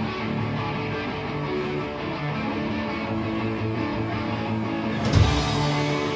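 Rock band playing live, electric guitar leading the opening of a song. About five seconds in the music gets suddenly louder and fuller.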